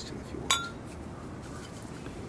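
A wine glass clinks once about half a second in: a short, sharp chink with a brief ringing tone, as it is picked up or knocks against something.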